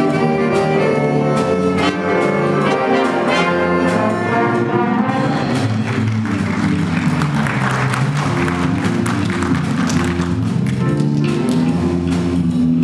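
High school jazz big band playing live: saxophones and brass in clear ensemble lines, moving about halfway through into a denser, noisier passage over lower held notes.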